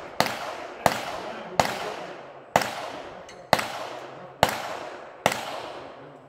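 A string of seven gunshots, about a second apart, each trailing off in a short echo.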